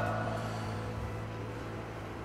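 Quiet stretch of a ballad's karaoke backing track between two sung lines: a low sustained note holds while the echo of the last sung phrase fades away.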